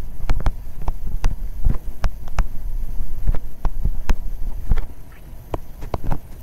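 Pen or stylus knocking and scratching on a writing surface as words are handwritten: irregular sharp taps, about two a second, over a steady low hum.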